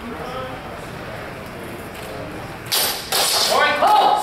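Longsword bout: a sudden loud clash about three-quarters of the way in as the two fighters close, followed at once by loud shouting whose pitch rises as the exchange is called.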